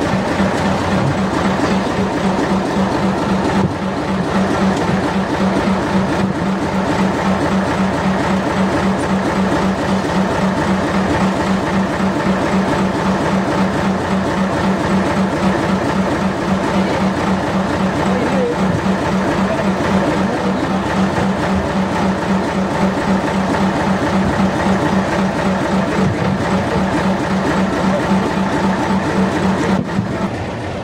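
A fishing boat's engine running steadily and loudly, with a fast, even throb.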